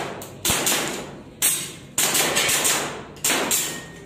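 A pistol fired in a string of about five shots, irregularly spaced, with a pair in quick succession near the end; each bang rings briefly in the room.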